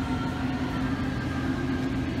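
Steady hum and low rumble of a grocery store's background, with a constant low tone running under it.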